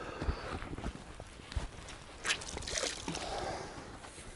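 Quiet handling of a wet cloth sock in the hands, with light rustles and small drips, and two brief rustles a little past halfway.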